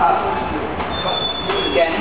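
Train wheels squealing: a high, steady two-tone squeal that starts nearly a second in and lasts about a second, over a background of voices and rumble.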